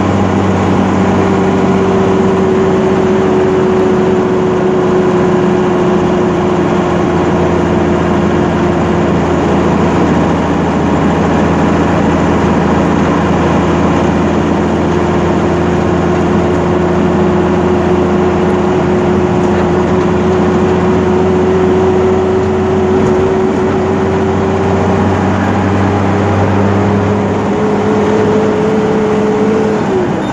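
Truck's diesel engine running steadily under way, heard inside the cab, with a thin whine above the low engine hum. Near the end the whine rises a little and the low hum drops away.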